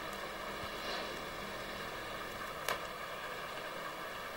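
Steady background hiss with a faint electrical hum, broken once by a single sharp click a little under three seconds in.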